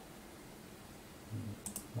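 Quiet room tone, then two quick computer mouse clicks close together near the end.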